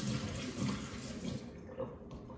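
Punch being poured out of a pitcher into a sink, a steady splashing rush that tails off about one and a half seconds in.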